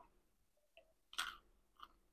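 Mostly near silence with a few faint short clicks, the clearest just after a second in: mouth sounds of biting into and chewing a fried chicken nugget.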